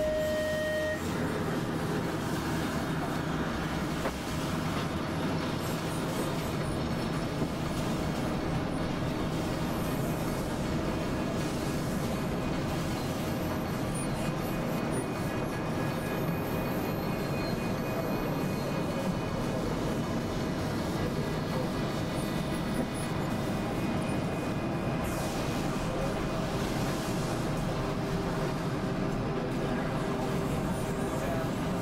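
Experimental electronic noise music: a dense, steady rumbling drone with faint held tones layered over it. A couple of brief higher tones stop about a second in, and a new low held tone comes in near the end.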